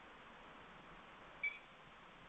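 A single brief high-pitched beep about one and a half seconds in, over a steady faint hiss.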